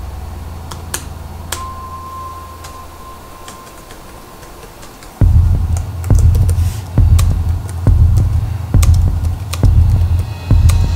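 Laptop keyboard keys clicking in scattered taps as text is typed, over a low steady drone. About five seconds in, a loud deep bass pulse starts and beats about once a second.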